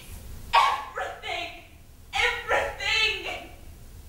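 Performers' voices making short, high-pitched wordless calls in two bursts, one about half a second in and one about two seconds in.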